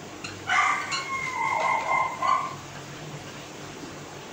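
Whiteboard marker squeaking on the board while words are written: a high, whining squeal of about two seconds, starting about half a second in, with a few light taps of the marker tip.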